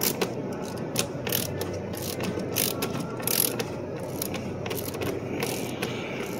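A 3/8"-16 tap being turned by hand into a steel door frame with a ratcheting refrigeration service wrench, the ratchet clicking in short, irregular strokes. The threads are being cut dry, without lubricant.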